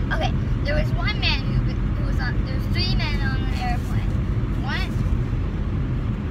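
Steady low road and engine rumble inside a moving car's cabin. A child's high-pitched voice breaks in three times, sliding up and down in pitch.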